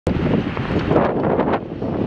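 Wind blowing hard across the microphone: a rough, rushing noise that rises and falls, with a few sharper gusts about a second in.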